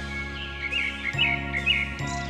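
Soft background music with held notes, and a few short bird chirps through the middle.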